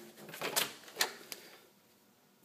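A closet door being opened onto a furnace: a short brushing sweep, then a sharp click and a fainter click.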